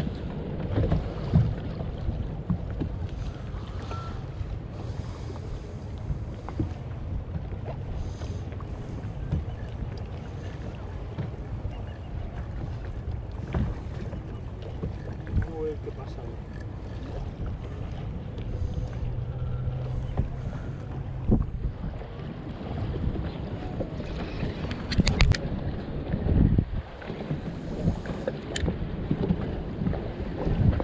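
Wind rumbling on the microphone over water slapping against a small boat's hull on choppy water, with a few sharp clicks near the end.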